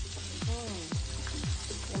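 Sliced onions sizzling in an oiled frying pan as they are stirred with a wooden spoon, under background music with a beat about twice a second.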